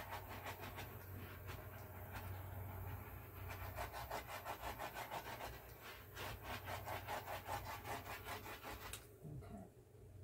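Handheld torch flame hissing as it is swept back and forth over wet acrylic paint to bring up cells, the sound pulsing about five times a second. It cuts off about nine seconds in.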